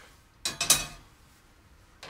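Stainless steel saucepan set down on a gas stove's grate: a brief metal clatter about half a second in, peaking in one sharp clank, then fading.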